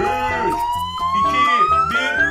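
A long whistle tone sliding steadily upward in pitch, a suspense build-up sound effect for a countdown, over cheerful background music.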